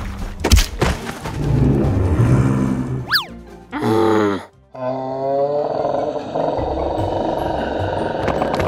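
Cartoon sound effects over background music: a sharp hit about half a second in, a quick rising boing-like slide about three seconds in, then the animated T. rex's drawn-out, wavering roar-like groan.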